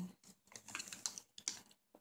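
Hands handling the small plastic packets and tray of a diamond painting kit: a few faint, irregular clicks and crinkles.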